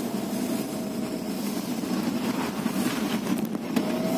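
Vehicle engine and road noise heard from inside the cabin while driving slowly at night, a steady hum with a faint whine in it. A couple of light knocks come near the end.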